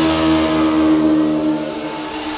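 Breakdown in a melodic techno track: the kick drum and bass drop out, leaving a held synth chord over a hissing noise wash that gets slightly quieter toward the end.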